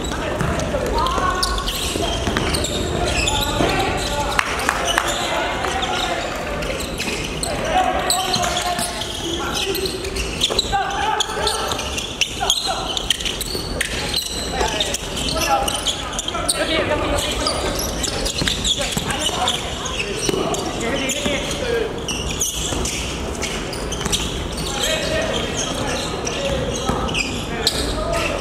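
Basketball practice game in a large gymnasium: players' voices calling out, mixed with a basketball bouncing on the wooden court and short sharp knocks, all echoing through the hall.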